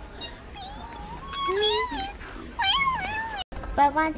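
A child's high-pitched voice making a few short wordless calls that rise and fall in pitch. The sound cuts off suddenly about three and a half seconds in.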